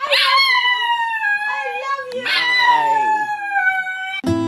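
Small dog howling: two long, high howls, each sliding slowly down in pitch, the second starting about two seconds in. A lower voice howls along briefly under the second howl.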